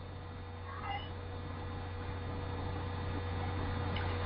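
Steady electrical hum and background hiss on an open video-call line, with a short, faint sound that bends in pitch about a second in.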